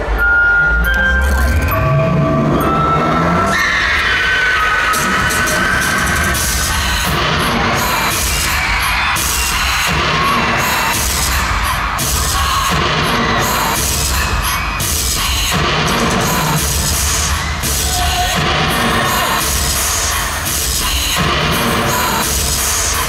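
Live concert intro music played loud through an arena PA: deep bass hits and a rising sweep in the first few seconds, then a full, dense mix with repeating bass pulses, with the crowd screaming and cheering over it.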